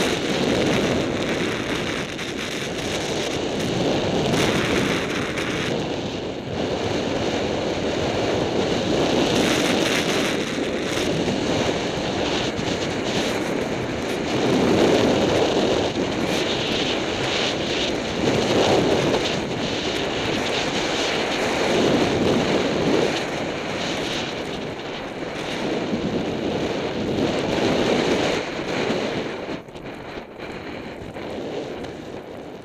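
Wind rushing over the microphone of a downhill-moving snowboarder's camera, mixed with the board sliding and scraping over snow. The noise is loud and steady, swelling and easing every few seconds.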